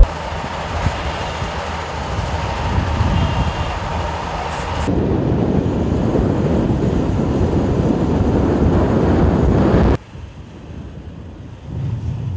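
Heavy vehicle and engine rumble at a road-construction site, with wind on the microphone. It grows louder about five seconds in, then drops suddenly to a quieter hum about ten seconds in.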